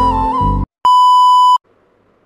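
Background music with a held melody over a low drone stops abruptly just over half a second in. After a brief gap comes one loud, steady electronic beep lasting about three-quarters of a second, followed by faint room tone.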